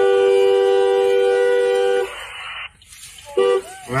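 Car horn with two notes sounding together, held in one long honk that cuts off about two seconds in, then a second short honk near the end.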